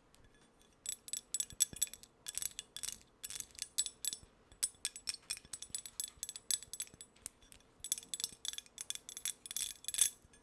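Long acrylic fingernails tapping on a ceramic nutcracker figurine: quick clusters of sharp, high-pitched clicks that begin about a second in and go on with short pauses.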